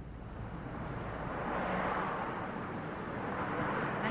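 Outdoor street noise with a vehicle going by, swelling to a peak about halfway through and then easing off.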